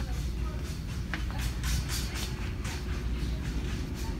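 Steady low rumble of indoor store background noise, with a few faint scattered taps.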